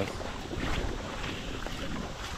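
Wading footsteps sloshing steadily through shallow creek water, with wind rumbling on the microphone.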